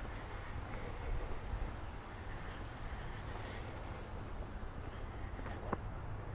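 A person's breathing while walking, picked up close by a camera's built-in microphone over a steady low hiss, with a couple of faint ticks near the end.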